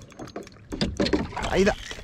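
A man's wordless, strained exclamations while netting a hooked fish, preceded by a few short clicks and knocks in the first half-second.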